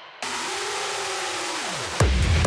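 Electronic dance track breakdown: a burst of white noise cuts in a moment in and holds steady, with a tone under it that falls sharply in pitch near the end, leading into the beat.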